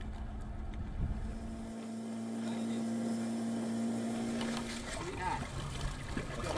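Boat engine running at a steady hum, then people's voices starting near the end.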